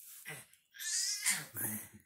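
Two bursts of breathy, laughing voice sounds at close range, a short one first and then a longer, louder one, from the playing baby and her father.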